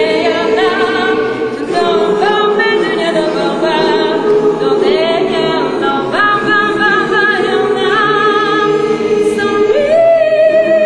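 A cappella jazz choir holding sustained chords beneath a female lead voice, which sings a melody line with vibrato above them in short phrases.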